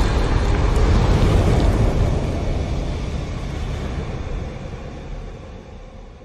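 Logo-reveal sound effect: a deep, noisy rumble that follows a boom and fades steadily away.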